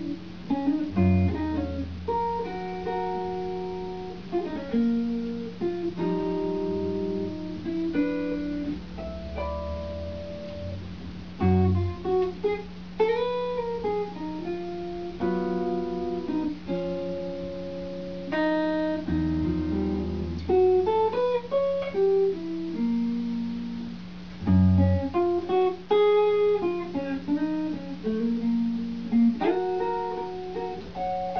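Solo electric guitar played through effects pedals: picked single notes and chords ring out and fade over a steady low drone, with a few deep bass swells.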